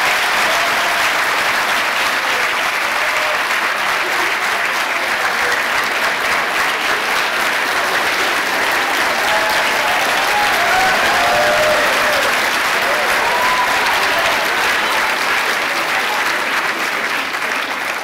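Large audience applauding steadily and loudly for the whole stretch, with a few voices calling out from the crowd in the middle.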